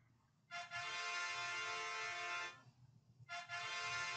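Sound effect played by the LEGO Spike Essential program's sound block: two long, steady electronic tones of about two seconds each, the first starting about half a second in and the second about three seconds in.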